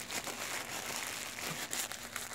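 Tissue paper crinkling and rustling under the fingers as they pick at the tape sealing a tissue-wrapped package, with a few sharper crackles near the end.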